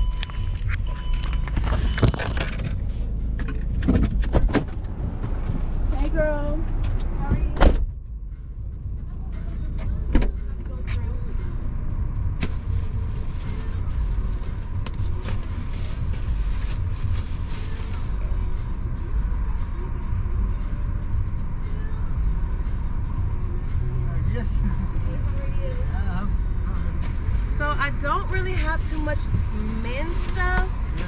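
Car interior with a steady low engine idle. Knocks and rustling fill the first few seconds, ending in a loud car door slam about eight seconds in, after which the cabin sounds closed off. Faint muffled voices come from outside near the end.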